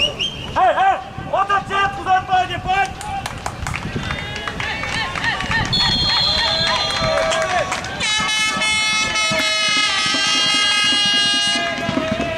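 Football spectators shouting, a brief high whistle about six seconds in, then a long steady horn blast from the crowd from about eight seconds until near the end.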